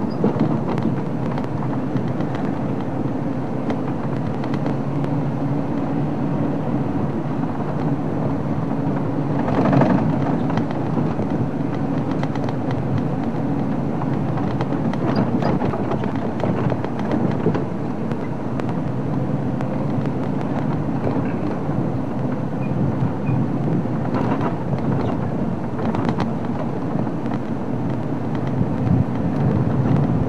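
Open safari vehicle driving on a dirt track: steady engine hum and tyre and body rattle over the rough road, with a few louder jolts about ten seconds in and again near twenty-five seconds.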